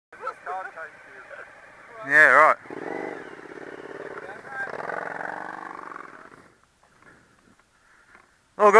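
A motorcycle engine running as the bike rides slowly past on a gravel road, fading away after about six seconds. A brief loud voice cuts in about two seconds in.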